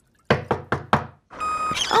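Four quick knocks on a door, a cartoon sound effect. Near the end, the steady noise of roadworks machinery starts up.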